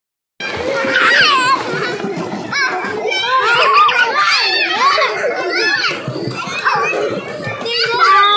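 A group of young children shouting and chattering over one another in high voices, with water splashing as they kick their legs in a swimming pool.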